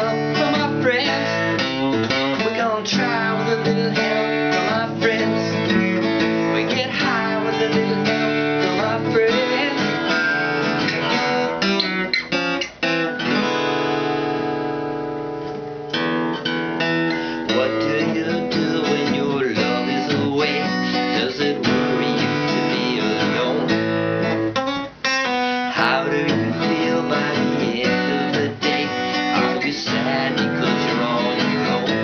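A man singing while strumming a sunburst Epiphone acoustic guitar. Around the middle one chord is left to ring and fade for a couple of seconds before the strumming starts again.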